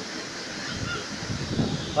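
Waterfall's steady rush of falling water, a continuous even wash of noise. A voice shouts just as it ends.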